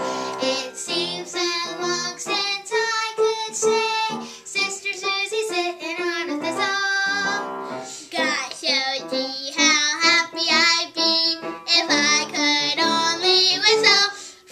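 A family group singing a song together, children's voices leading with adult voices among them.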